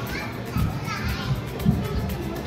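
Children playing, with high voices calling out, and a few dull thumps, the loudest near the end.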